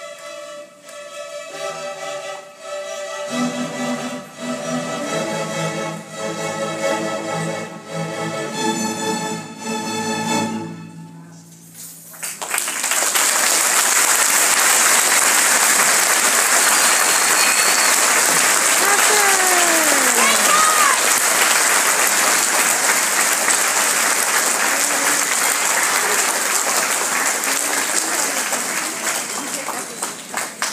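Student string orchestra playing the closing bars of an overture, ending on held chords about eleven seconds in. Then the audience applauds loudly, with a few cheers partway through.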